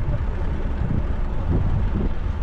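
Wind buffeting the microphone of a bicycle-mounted GoPro action camera while riding: a steady low rumble.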